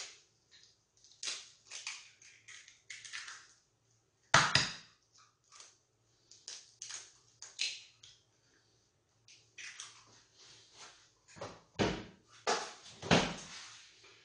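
Eggs being cracked into a plastic bowl: sharp shell cracks and taps, the loudest about four and a half seconds in, then light clicks of a fork in the bowl, and a few heavier knocks near the end.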